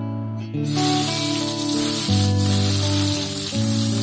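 Background music with steady held notes. From about half a second in, koi fish start sizzling in hot oil in a kadai, a steady hiss over the music.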